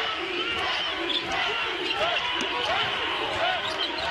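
Live basketball play on a hardwood court: sneakers squeaking in many short chirps and the ball bouncing, over the steady noise of an arena crowd.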